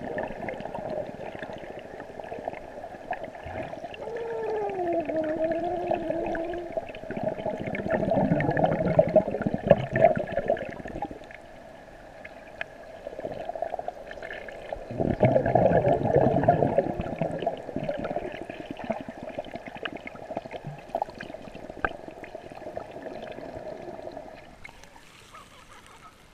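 Muffled underwater sound of a swimming pool picked up through an action-camera housing: a steady hum with two louder swells of churning water as a child kicks and paddles close by, and a wavering tone that slides down and back up several seconds in. The underwater hum stops shortly before the end as the camera comes out of the water.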